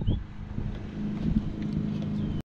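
Wind buffeting a small action camera's microphone: an uneven low rumble.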